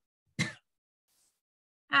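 A woman clears her throat once, briefly, about half a second in.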